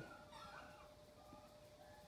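A hen's faint, soft calls: a few short rising-and-falling whines while she is held and her sore, infected ear is swabbed.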